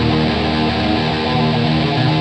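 Heavy rock song in a passage without singing: electric guitars holding sustained chords, with no drum hits standing out.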